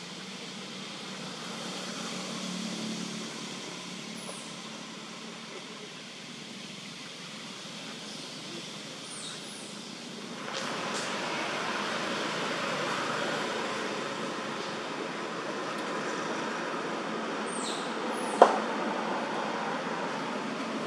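Steady outdoor background noise that grows louder about halfway through, with a few short, high, falling chirps scattered through it and one sharp click near the end.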